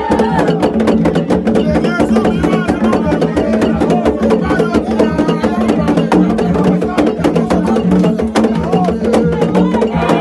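Hand drums played live at a fast, steady beat, with dense clicking percussion, while a man's voice sings over them.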